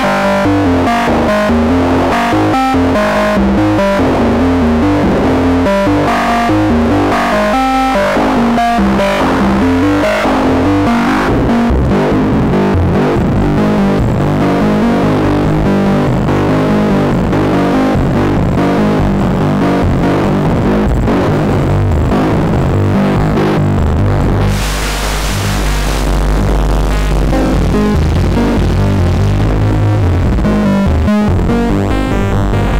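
Kkno Technology SGR1806-20 Eurorack module processing a synth signal through its wavefolder under control voltage. It plays a run of short pitched notes that turn denser and grittier as the folding changes, and a hiss with heavier bass comes in about three-quarters of the way through.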